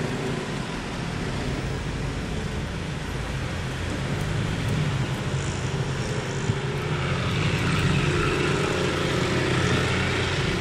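Car engine and tyre noise heard from inside the cabin while driving, a steady drone that grows louder over the second half.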